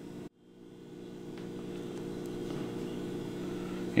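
A steady low machine hum, like an air conditioner or fan, fading in after a brief dropout just after the start.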